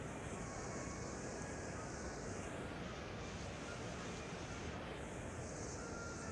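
Low, steady background noise of a live broadcast: the ambience of a large concert hall with tape hiss, with no distinct events.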